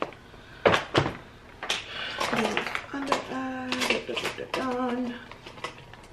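A few sharp clicks and clacks of small makeup containers being handled and set down on a table in the first two seconds, followed by a woman's voice in two held, wordless notes.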